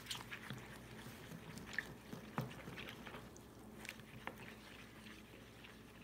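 Metal spoon stirring a thin flour-and-water paste in a small bowl: faint wet squishing with a few scattered light clicks of the spoon against the bowl.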